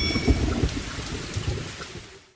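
Thunder-like rumbling noise from the tail of a radio station's intro sting, fading away toward the end.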